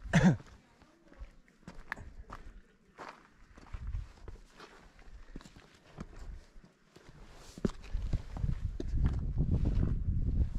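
Footsteps and scrambling on bare rock and grit, with scattered scuffs and clicks of shoes and hands against the stone as someone climbs. A brief loud sound comes right at the start, and a low rumble builds over the last couple of seconds.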